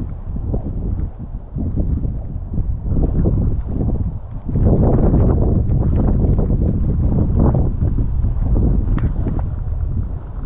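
Wind buffeting the microphone in gusts, a low rushing noise that grows louder about halfway through.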